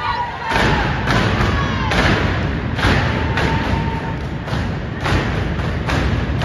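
Step team stomping in unison on a stage platform: about seven heavy thuds in an uneven rhythm, with shouts from the crowd between them.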